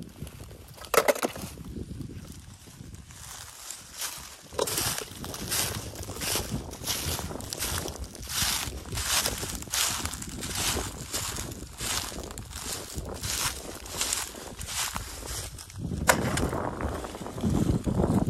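Footsteps crunching through dry fallen leaves at a steady walking pace, about one and a half steps a second, starting a few seconds in and stopping shortly before the end.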